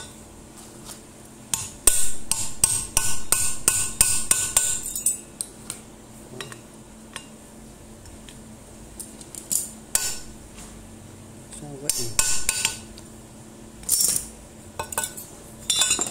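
A fast run of sharp metallic knocks, about three or four a second, for a few seconds starting near two seconds in, then scattered single knocks and clinks: the output spindle of a Makita 9500 angle grinder being driven into its bearing in the gear housing.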